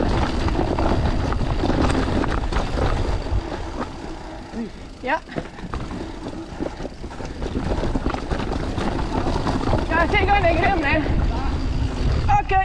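Mountain bike ridden down a dry dirt forest trail: tyres rumbling and the bike rattling over roots and stones, with wind on the camera microphone. It quietens for a few seconds in the middle, where a short rising pitched squeal is heard, and a wavering high-pitched sound comes near the end.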